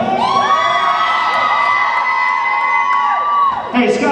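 A long, high-pitched shout held on one note for about three and a half seconds, then dropping off.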